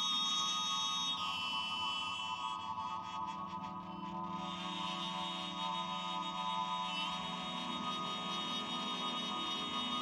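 Slow ambient doom music of layered, sustained electric guitar drones holding steady tones. The upper tones step down in pitch about a second in and shift again near the middle.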